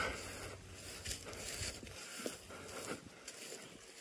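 Soft footsteps swishing through dry grass, faint, about two steps a second, with light rustling.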